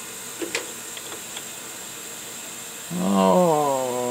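A light click about half a second in as the plastic part is set against the metal lathe chuck jaws, with a couple of faint ticks after. Near the end, a man's drawn-out wordless 'uhh', falling a little in pitch, over a faint steady hiss.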